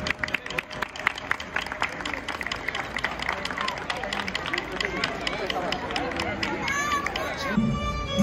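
A crowd clapping in irregular applause, with voices chattering; the clapping thins out after a few seconds. Music starts up just before the end.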